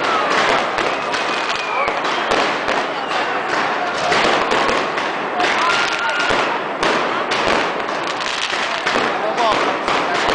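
Fireworks going off overhead: aerial shells bursting and rockets launching in a dense, continuous run of bangs and crackles.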